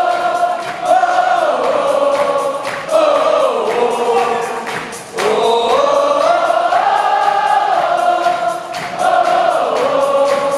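Live concert music in a large arena: a slow melody sung by many voices together, choir-like, in long held phrases with short breaks between them.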